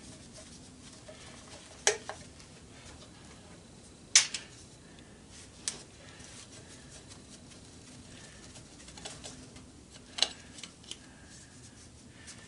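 A few sharp, scattered metal clinks and clanks as tools and parts are handled on an electric motor's end cover. The loudest comes a little past four seconds in.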